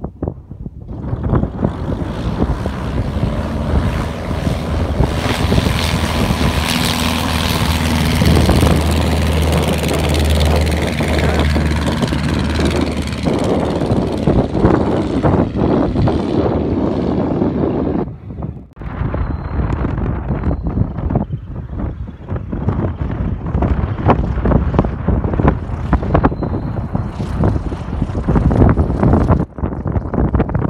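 Aeronca Chief light aircraft's engine and propeller at full power on a takeoff run. The sound builds to its loudest as the plane passes closest, a steady engine hum under a broad roar, then fades as it climbs away. After an abrupt break just past halfway, gusty wind buffets the microphone, with the engine only faintly behind it.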